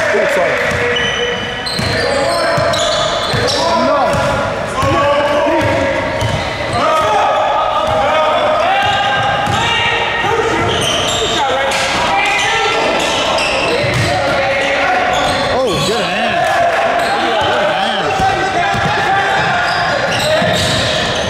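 Basketball game in play: the ball bouncing repeatedly on the gym floor amid players' indistinct voices, echoing in a large hall.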